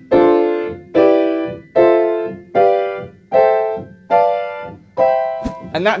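Upright piano playing seventh chords one at a time up the C major scale, seven in all from D minor 7 to C major 7. Each chord is struck about every 0.8 seconds and left to ring and fade.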